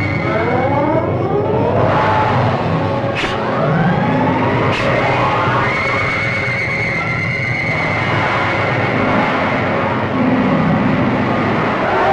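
Film sound effects of magic arrows in flight: repeated rising whistling sweeps, with sharp cracks about three seconds in and again near five seconds, over background music.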